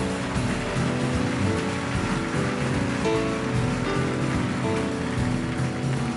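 Live jazz quartet of piano, vibraphone, upright bass and drum kit playing together, the drums laying down a dense wash of cymbals under the pitched notes.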